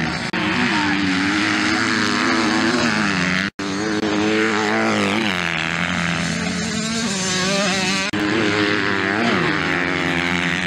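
Off-road motocross bike engines revving hard, the pitch climbing and dropping repeatedly as the riders accelerate, shift and back off through the turns. The sound cuts out for a split second about three and a half seconds in.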